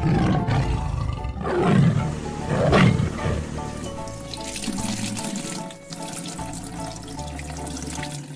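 A tiger roar sound effect over background children's music, rising to two loud peaks about a second apart in the first three seconds. Then a liquid-pouring sound effect, like water running from a tap, continues over the music.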